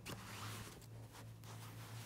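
Faint rustling of plush toys and fabric being handled and dragged across a bedspread, over a low steady hum.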